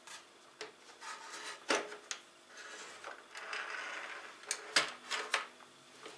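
Plastic clicks and knocks of a tilt-head stand mixer being worked: the release button pressed and the head swung on its hinge, with a short rubbing, sliding sound in the middle and a cluster of sharp clicks near the end as the head is brought down.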